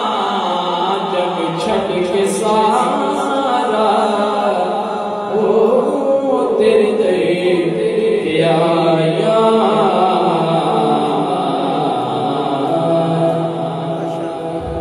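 A young man's voice reciting a Punjabi naat unaccompanied into a microphone, holding long, wavering, ornamented notes.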